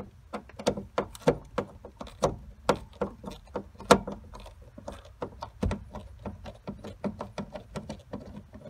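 Hand screwdriver turning a screw in a wooden mounting strip, a run of short irregular clicks and creaks about four a second, the loudest about four seconds in.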